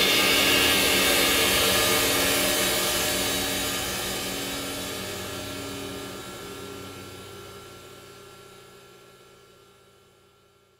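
Final chord of a rock track ringing out: a sustained, noisy wash with a few held tones that fades away steadily over about ten seconds.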